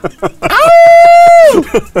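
A man laughing loudly: a few short bursts, then one long high-pitched laugh held for about a second with a quick pulsing running through it, then a few shorter laughs.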